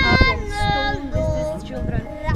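Children's voices singing together, several voices holding sustained notes.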